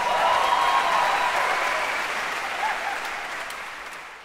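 Audience applauding at the end of a song: the applause breaks out all at once, then slowly dies away.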